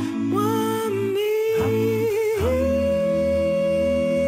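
Gospel music from a male vocal group, mostly humming. The voices move through a couple of chords, then hold one long steady note from about halfway through, over a low sustained bass part.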